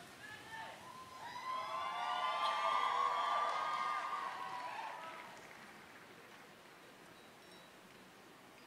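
Audience cheering, many voices calling out together, building to a peak about three seconds in and fading out by about six seconds.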